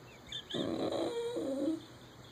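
Shetland sheepdog 'talking': a drawn-out whine-groan lasting just over a second that wavers up and then down in pitch. It is her demand for a ball stuck under the couch.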